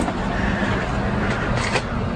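Steady machine hum and whir, with an even low drone, like cooling fans running on equipment in the room.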